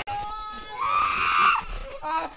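A long, high-pitched scream, held with a slight waver for just under a second starting about a second in, after the sound cuts in abruptly.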